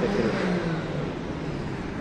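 A car running past on the street, a low steady engine hum that fades over the first second, over general street noise.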